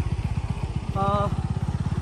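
Motorcycle engine running at low speed close by, a steady, rapid low pulsing. A brief voice sounds about a second in.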